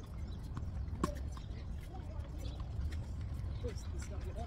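Tennis ball struck by rackets and bouncing on a hard court: a few sharp knocks, the loudest about a second in, over a steady low rumble.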